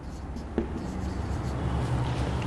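Marker writing numbers on a whiteboard: a run of scratching strokes with one sharp tap about half a second in.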